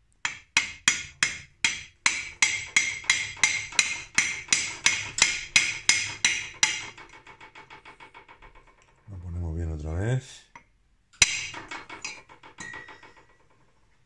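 Repeated hammer blows, about three a second, on the end of an exhaust pipe used as an improvised driver to drive a crankshaft oil seal into a Harley-Davidson Sportster's engine case. Each blow leaves a short metallic ring. Past the middle they turn to lighter, quicker taps, with one more hard strike and a few light taps near the end.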